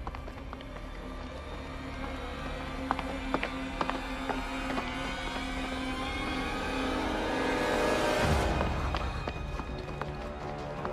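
Tense background music: a steady low drone under a swell that builds and cuts off sharply about eight seconds in, with a few sharp clicks a few seconds in.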